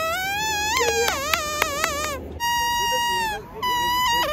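Homemade whistle of a green seed pod with its seeds stripped out, blown like a reed: a shrill, buzzy note that wavers and slides in pitch, broken by several quick stops in the first two seconds. After a short gap comes a long, steadier held note, and a new note starts near the end.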